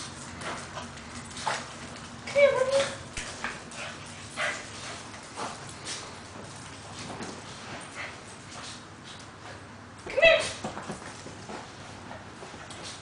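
A papillon and a shih tzu whimpering and yipping with excitement as they greet their owner, over scattered clicks and scuffles. The loudest call, a short high whine, comes about ten seconds in.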